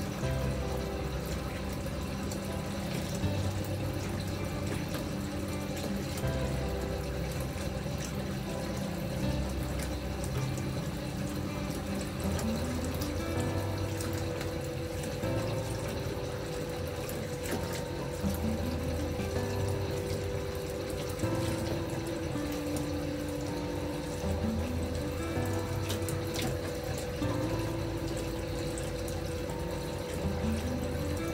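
Water pouring from a bath spout at full pressure into a partly filled bathtub, a steady splashing stream, under gentle background music with slow held notes.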